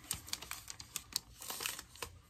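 Plastic protective wrap on a new laptop being handled, giving a string of irregular light clicks and rustles.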